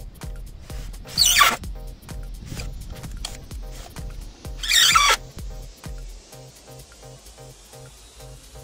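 A cordless drill running into a wooden beam in two short, loud bursts, about a second in and again about five seconds in, over background music with a steady beat.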